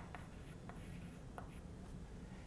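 Chalk writing on a blackboard: a few faint, separate taps and scratches of the chalk as letters are written.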